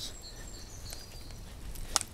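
Quiet outdoor woodland ambience with a steady low rumble of wind and movement, a few faint high chirps of a small bird in the first second, and a single sharp click just before the end.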